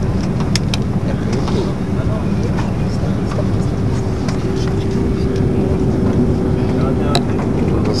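Cabin noise inside an Airbus A330-200 airliner arriving at the airport: a steady low rumble of engines and airflow with a constant hum, and a few small clicks.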